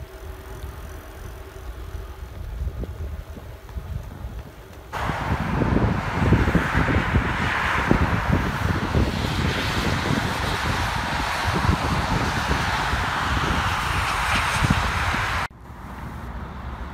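Low wind rumble on the microphone of a camera riding on a moving bicycle; then, after a sudden cut about five seconds in, louder steady traffic noise from a multi-lane highway heard from an overpass above it.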